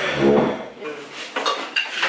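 Kitchen clatter: several sharp clinks of dishes and cutlery in the second half, over a brief stretch of background chatter.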